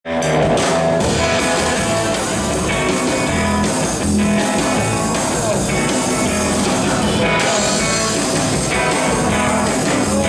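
Live rockabilly band playing a steady rock-and-roll number: hollow-body electric guitar and acoustic guitar strumming over a drum kit beat.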